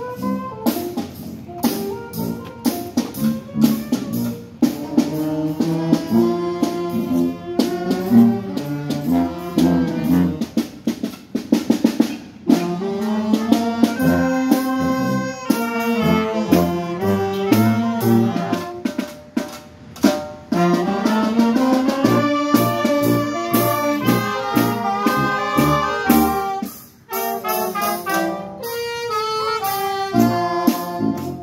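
A street brass band playing an upbeat tune: trombones, trumpets and saxophones in ensemble over a steady percussive beat, with a sousaphone on the bass.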